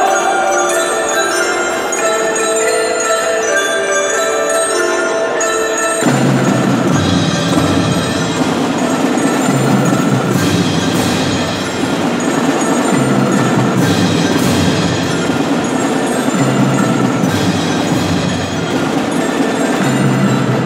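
Youth percussion ensemble playing: mallet keyboards and bell-like chimes ring sustained chords, then about six seconds in the full section comes in with a denser, fuller sound, with strong accents recurring every three to four seconds.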